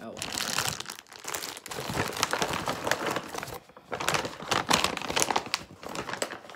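Plastic ingredient packets and a paper bag crinkling and rustling as they are handled and closed back up, in irregular bursts with a brief lull a little past halfway.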